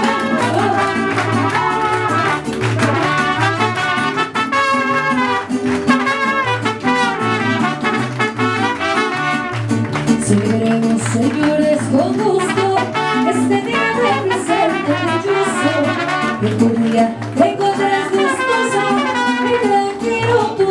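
Mariachi band playing a song live, with trumpets leading over a bass line that swings back and forth between two notes on a steady beat.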